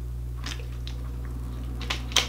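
A man drinking water from a plastic bottle: a few faint, short swallowing and bottle sounds, over a steady low electrical hum.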